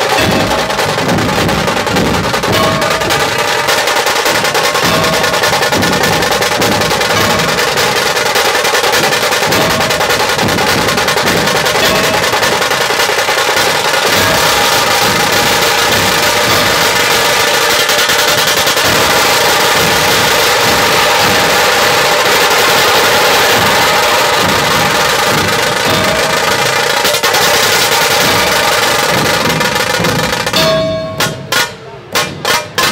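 Dhol tasha ensemble playing: tashas beaten with thin sticks in a fast, unbroken roll over the dhols. Dense and loud throughout.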